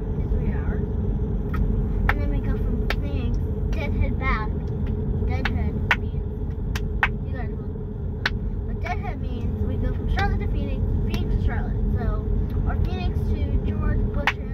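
Steady low road and engine rumble of a moving car, heard from inside the cabin, with sharp clicks now and then over it.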